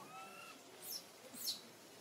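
Bird calling: a short whistled note that rises slightly, then two quick high chirps that fall steeply in pitch, about half a second apart, the second the loudest.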